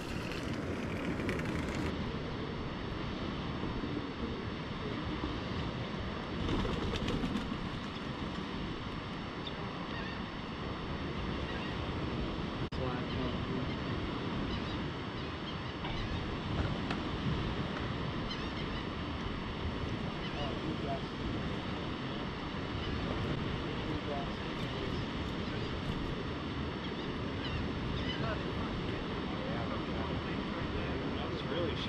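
Steady wash of surf and wind on the open water below a fishing pier, with a few faint short calls or distant voices scattered through it.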